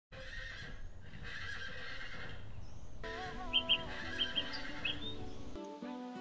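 A horse neighing over a low rumbling background, then a music intro starts about halfway through with gliding melodic notes and a few short high accents.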